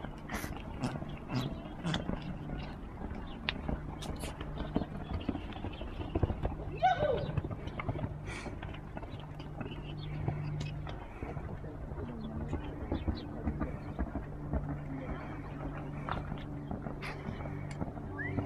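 Grey horse cantering on a sand arena: an irregular run of soft hoofbeats, with faint voices in the background.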